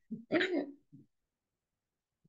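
A man's brief wordless vocal sound with a few small clicks around it, lasting about a second, then silence.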